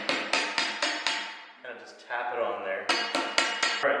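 A hammer driving a tape-wrapped PVC spacer onto a steel barbell shaft: quick strikes about four a second, each with a ringing tail. The strikes pause for about a second and a half in the middle, then resume briefly.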